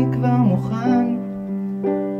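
A band playing a slow song: a male voice sings a short wavering phrase over long held instrument notes and a low sustained bass note, and a new chord comes in near the end.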